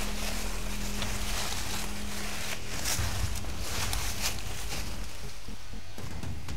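Footsteps and rustling of several people walking through grass and undergrowth, irregular soft crunches over a low steady hum that fades about halfway through.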